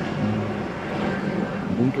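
Steady drone of distant city traffic through a pause in talk, with a man's voice coming in just at the end.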